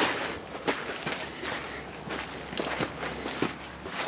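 Footsteps on wet asphalt: a series of irregular steps over a low, steady rumble.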